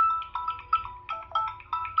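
A ringtone-like melody of short, quick notes played through the Samsung Galaxy Tab A7 Lite's built-in dual speakers, as a test of the speakers.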